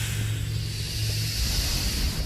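Steady rushing hiss of a spaceflight sound effect over a low drone of background music; the drone deepens about halfway through.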